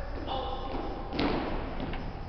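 A drawn-out shouted drill command, then a single sharp thud about a second in, as drill boots strike the hardwood gym floor together. The thud rings on in the big hall's echo.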